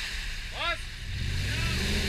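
A lifted off-road SUV's engine pulling harder as it ploughs through a deep mud hole, rising about one and a half seconds in, with brief shouts from onlookers.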